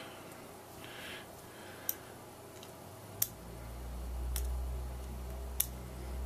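A few sharp, separate clicks from handling an e-pipe while an 18350 lithium-ion battery is fitted inside it. A low hum comes in about halfway through.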